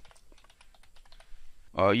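Computer keyboard being typed on: faint, irregular key clicks as words are entered. A man's voice starts near the end.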